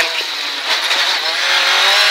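Ford Escort Mk2 rally car's engine heard from inside the cabin. The note falls back as the driver lifts off, then revs climb again from about a second in as the car accelerates away.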